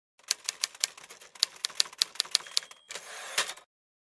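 Typewriter keys clacking in an irregular run of sharp strikes for nearly three seconds, then a brief ring and a short sliding rush that stops abruptly about half a second before the end.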